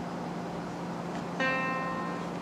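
A single note from a laptop piano program, triggered by touching a sausage wired as a key through a keyboard-converter board; the note sounds sharply about a second and a half in and rings on, slowly fading.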